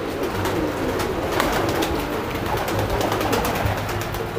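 A hand-held fantail pigeon beating its wings in quick flurries of flaps, with pigeons cooing in the loft.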